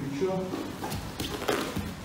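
A brief voice near the start, then grapplers' bodies shifting and thudding on the training mats, with scuffing of the gi cloth.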